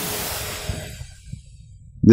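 A long breath out into a clip-on microphone: a soft hiss that fades away over about a second and a half.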